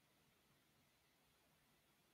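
Near silence: faint recording noise floor.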